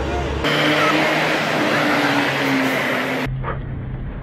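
Outdoor street noise: a loud, even hiss with voices and traffic in it, cut off suddenly about three seconds in. A moment of band music ends just before it.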